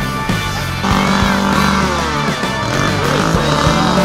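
Rock music with a steady beat and sustained bass notes, stepping up in loudness about a second in.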